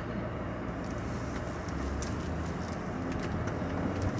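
Car driving slowly, its engine and road noise a steady low hum heard from inside the cabin.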